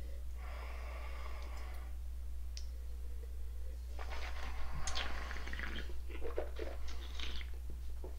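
A man tasting white wine from a glass. First a drawn-in breath at the glass lasting about a second and a half, then, after a short pause, about three seconds of wet mouth clicks and swishing as he sips and works the wine in his mouth. A steady low electrical hum runs underneath.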